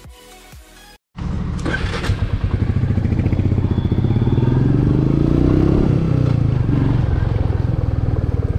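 Music for about a second, then a hard cut to a motorcycle engine running close to the microphone. Its note rises for a couple of seconds as the bike pulls away, then drops back.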